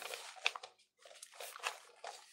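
Faint scattered clicks and soft rustling, with a sharp tick about half a second in and another near the end, dropping out to dead silence in between.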